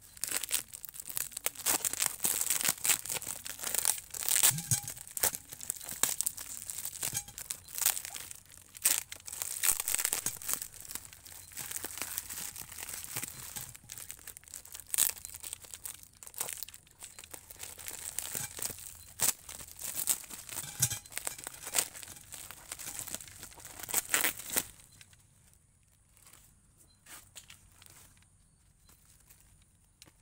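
Thick plastic parcel wrapping being cut with a utility knife and torn open by hand, crinkling and tearing in dense irregular bursts. After about 24 seconds it drops to a few faint rustles.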